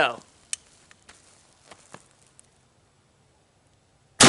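A few faint clicks of a single-shot break-action rifle being handled and raised to the shoulder, the sharpest about half a second in, then near silence as he aims.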